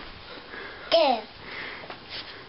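A baby's short vocal sound, falling in pitch, about a second in, with faint breathing and sniffing around it.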